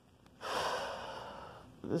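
A person taking one long, audible breath, a hiss that fades out over about a second, in a pause between words.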